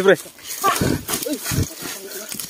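Men's grunts and short cries of exertion while scuffling, with two heavy thuds about a second apart.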